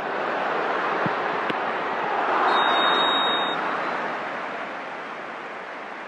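Football stadium crowd noise, a steady roar from the stands that swells about two seconds in as an attack develops and then dies down. Two short knocks are heard about a second in.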